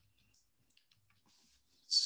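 Near silence with a few faint clicks, then a voice starts speaking right at the end with a hissing 's' sound.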